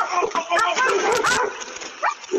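A dog yipping and barking in a quick run of short, high cries.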